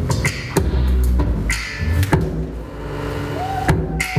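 Dance music track with heavy bass and sharp, beat-like percussive hits. The beat thins out about halfway through, then comes back with a strong hit near the end.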